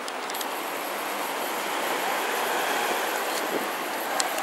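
Street traffic noise: a steady rushing sound of passing vehicles that grows somewhat louder in the middle and then eases.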